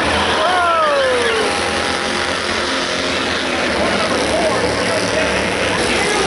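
Short-track stock cars' engines running in a single-file pack at caution pace, a steady, dense rumble. A voice with falling pitch comes in about half a second in and fades by a second and a half.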